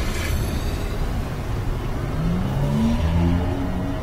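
Film soundtrack: a steady low rumbling drone, joined about halfway by a short run of low musical notes that step upward.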